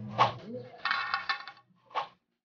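Wooden pole falling onto a concrete walkway: a sharp knock, a stretch of clattering as it bounces and rolls, and another knock near the end.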